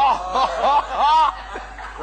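A person laughing in about four short high-pitched, rising-and-falling bursts, dying down about a second and a half in.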